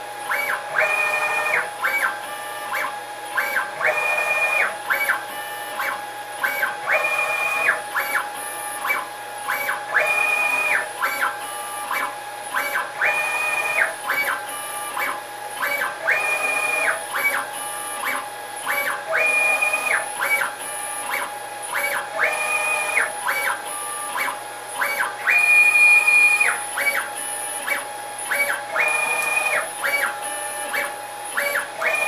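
A 6040 desktop CNC router's stepper motors whine in short pitched moves, over a steady tone. The axis moves come in a regular cycle of about one pair every three seconds as the head pecks down at one fixture pocket and moves to the next. The program has no G28 retract, so the head does not go all the way up between pockets.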